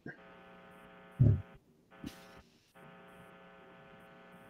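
Faint steady electrical hum with a buzzy stack of overtones, heard through a dial-in telephone line on a video call; it cuts out twice briefly. A short low thump about a second in is the loudest sound.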